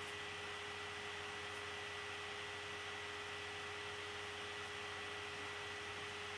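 Steady hiss of the recording's background noise, with a faint steady hum and a thin high steady whine running through it.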